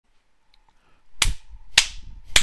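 Two sharp snaps about half a second apart, beginning about a second in, after near silence.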